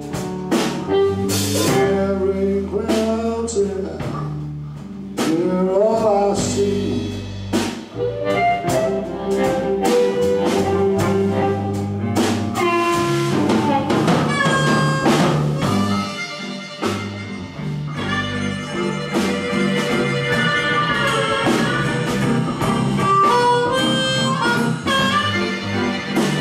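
A live blues band: harmonica played cupped into a microphone, with bent, wailing notes, over electric guitar, drum kit and double bass. From about the middle on, the harmonica holds steadier, higher notes.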